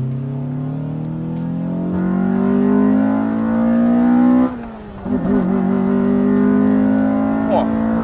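Honda Civic Type R EK9's 1.6-litre four-cylinder engine under hard acceleration out of a corner, heard from inside the cabin. Its pitch climbs steadily, drops sharply about four and a half seconds in, then climbs again.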